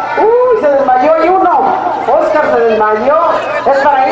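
A man's voice talking continuously and loudly.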